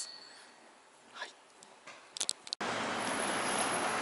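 A near-quiet subway platform with a few faint clicks, then an abrupt switch to steady city street traffic noise a little past halfway.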